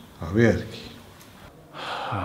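A man's voice: a short voiced syllable about half a second in, then a breathy, sigh-like exhale near the end.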